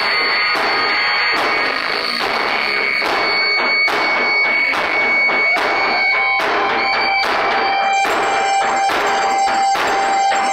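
Live experimental noise-drone music: dense electronic noise with high held tones and irregular hits on large drums. A lower steady tone joins about six seconds in.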